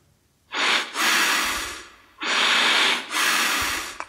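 A person breathing heavily and with effort: two long, loud breaths of about a second and a half each, the sound of someone acting out being unable to breathe.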